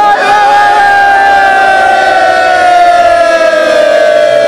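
A single long call held on one note, loud, sinking slowly in pitch over several seconds, in the manner of a ceremonial praise cry, with crowd sound beneath.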